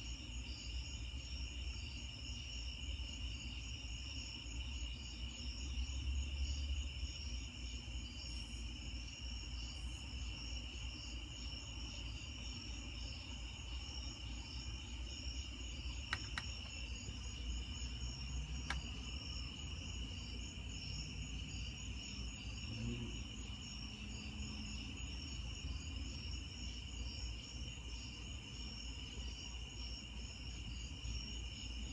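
A steady chorus of night insects chirping: a continuous high trill with a faster, higher pulsing above it, over a low rumble, broken by two brief clicks past the middle.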